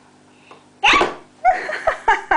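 A toddler's voice: a sudden loud vocal burst about a second in, then a string of short babbled sounds near the end.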